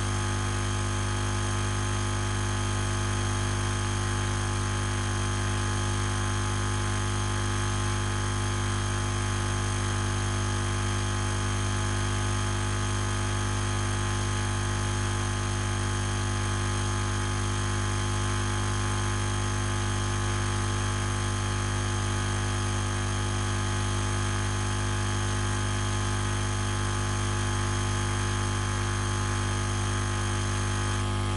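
Steady electrical hum and hiss, made of many constant tones, the strongest a low hum.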